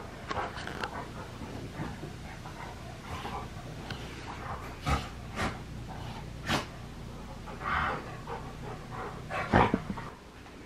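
Two pet dogs playing together on carpet, with a few short, sharp sounds from them spread through the middle and near the end.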